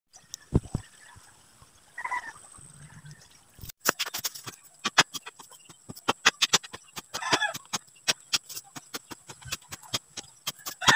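A hand digging tool striking into the soil of a foundation trench, from about four seconds in a rapid run of sharp chopping strikes, several a second. A short animal call comes through once, about seven seconds in.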